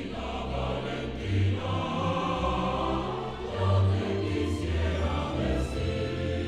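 Choral music: a choir singing long held notes over low sustained chords.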